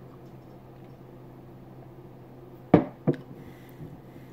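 A drinking glass set down on a wooden table: two sharp knocks about a third of a second apart, near the end, over a faint steady hum.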